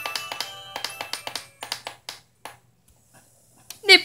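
Children's DVD intro music played from a TV: a run of quick plinking pitched notes that thins out and stops about two and a half seconds in. A cheerful voice starts announcing the title right at the end.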